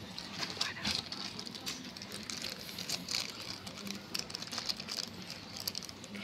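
Scattered soft clicks and faint rustling of handling, with a thin plastic sheet crinkling as it is held over a ceramic photo plaque on a wooden table.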